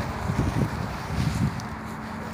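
Wind buffeting a phone's microphone outdoors, a low rumble that swells twice.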